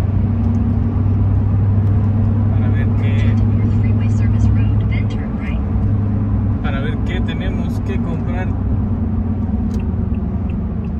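Steady road and engine drone inside a moving car's cabin, with a strong low hum that eases about six and a half seconds in as the car slows leaving the freeway.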